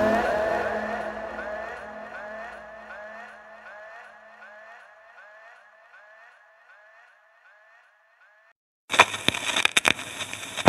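The outro of a trip-hop track fading away: a repeating rising, siren-like electronic sweep, about three a second, dying out to silence over about eight seconds. About nine seconds in a crackling, clicking noise starts abruptly, like the surface noise of an old record or film-sound sample.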